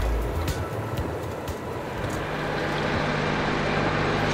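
Utility tractor's engine running steadily as it tows a wagon, with a steady low drone settling in about halfway through.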